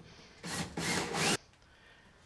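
Three short scraping strokes against wood in quick succession, about half a second in, each lasting under half a second.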